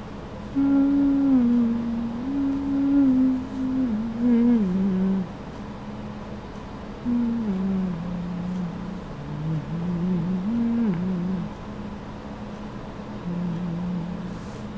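A person humming a slow tune in held notes that step up and down. It comes in two long phrases with a pause between and a short note near the end.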